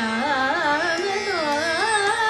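A woman singing a Hindustani classical practice line in a wavering, ornamented voice that glides between notes, with a slow dip and rise in pitch about halfway through. Under it runs the steady drone of a tanpura.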